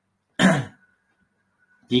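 A man's brief throat clearing about half a second in, a single short sound falling in pitch.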